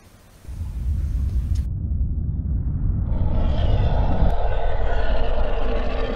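Outro sound effect: a deep rumble that starts about half a second in and builds, joined about three seconds in by a louder layer of several held pitches.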